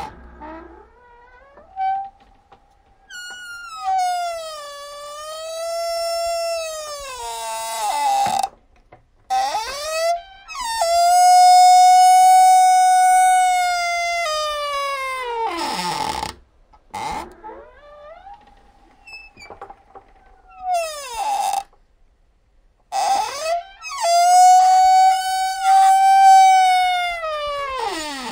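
A door creaking slowly on its hinges: four long, drawn-out creaks, each a high squealing tone that rises at the start, wavers, and slides down in pitch as it dies away. The second creak is the loudest and the third the faintest.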